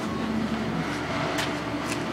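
Steady background hum of a school workshop, with two faint clicks in the second half.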